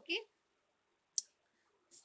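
A spoken "okay", then quiet broken a little over a second in by a single short, sharp click.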